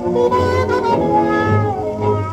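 Muted trumpet playing a wailing blues line with bending, sliding pitches over a dance orchestra, heard from a 1935 shellac 78 rpm record.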